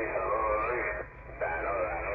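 Voice transmission on CB Channel 9 (27.065 MHz AM), received over a remote web SDR receiver. It sounds narrow and muffled like a radio speaker, with a short break a little past halfway.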